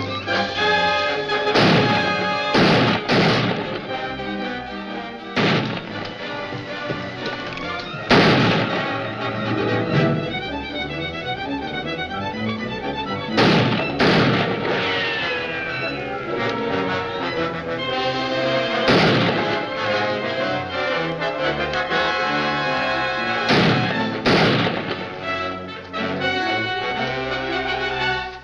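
Dramatic orchestral film score, cut through by about ten sharp bangs at irregular intervals: revolver shots in a night gunfight.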